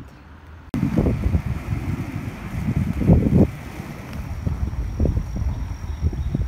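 Wind buffeting a camera microphone moving along a bike trail: a loud, gusty low rumble that surges and dips. It starts abruptly under a second in, after a brief quieter stretch of street ambience.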